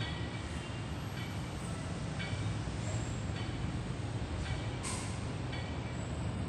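Seated cable row machine being worked: the cable and pulleys give a short squeak about once a second, once with each pull, over a steady low rumbling noise. A sharp click sounds about five seconds in.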